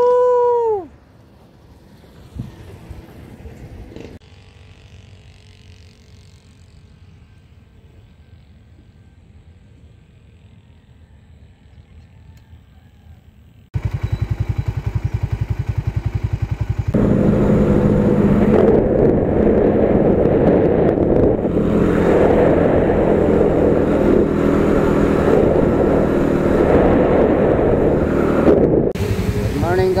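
A short shout opens, then a low background. About a third of the way in, a motorcycle engine running on the road cuts in abruptly, with wind noise. It grows louder a few seconds later and stays steady almost to the end.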